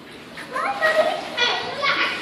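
Children's voices calling out and chattering, starting about half a second in; no distinct non-speech sound stands out.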